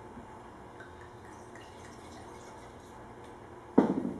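White wine being poured into a wine glass, a faint, steady trickle, followed near the end by one sharp knock on the wooden counter.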